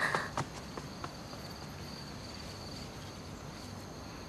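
Faint insects chirping in a steady high trill, the background of a night garden, with a few soft clicks in the first second.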